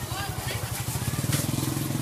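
A small motorcycle engine running at low revs, with a steady low pulsing note that grows louder about a second in.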